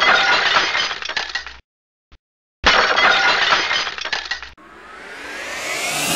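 Two glass-shattering sound effects, each a sudden crash with tinkling that dies away over about two seconds, with a short gap between them. Near the end a rising whoosh builds up.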